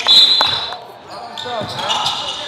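Basketball game sounds in a gym: a loud, short high-pitched squeal right at the start and a basketball thudding on the hardwood floor about half a second in, with players' voices after.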